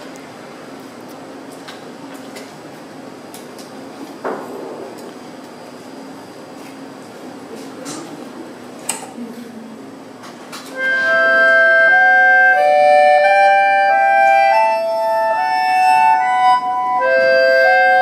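Quiet stage and room noise with a few sharp clicks. About ten and a half seconds in, an accordion starts loudly, playing a melody of held notes that step up and down.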